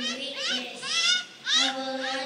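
A young child's high-pitched voice making three short rising squeals, about half a second apart.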